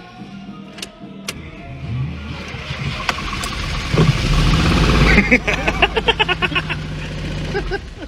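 Car engine running, heard from inside the cabin, growing louder over the first few seconds. Two sharp clicks come about a second in.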